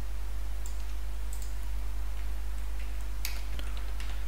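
A few sparse, faint computer keyboard clicks, spaced roughly a second apart, over a steady low hum.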